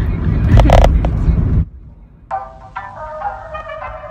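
Car cabin noise while driving, a low steady rumble with a short burst of voice, cutting off suddenly about one and a half seconds in. After a brief lull, background music starts with a thin, bass-less sound.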